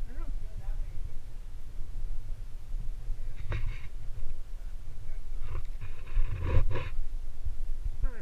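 Low, fluctuating rumble of wind on a head-mounted camera's microphone. A short rustle or breath comes about three and a half seconds in, and a louder one between five and a half and seven seconds, with faint voices.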